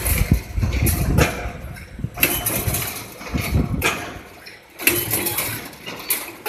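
A 2 m welded wire mesh machine running through its welding cycle, with a low mechanical rumble. A sharp noisy burst comes about every second to second and a half as the welding heads work.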